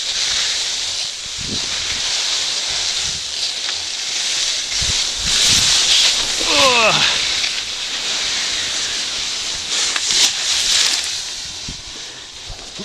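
Blizzard skis scraping and skidding over icy snow, a steady hiss that grows louder around a fall about six seconds in.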